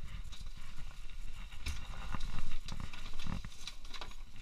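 Footsteps on a hard floor, with irregular clicks, knocks and low rumbling handling noise from a carried action camera, and a louder thump about two and a half seconds in.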